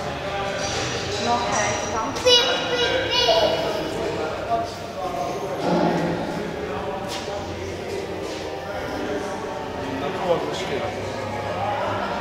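Indistinct chatter of several people in a large, echoing indoor hall over a steady low hum, with a brighter high-pitched voice standing out about two seconds in.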